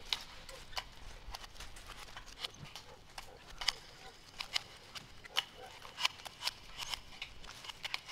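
An irregular run of short, sharp clicks and snaps, two or three a second, some louder than others, over a faint background hiss.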